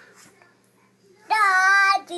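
A toddler's voice: faint breathy sounds, then about a second and a quarter in a loud, high, sung note held steady for most of a second.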